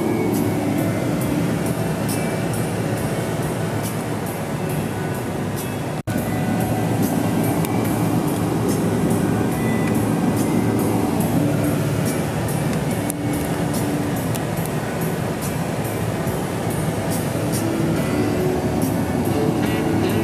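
Music playing on a car radio inside a moving car's cabin, over steady road and engine noise, with a brief dropout about six seconds in.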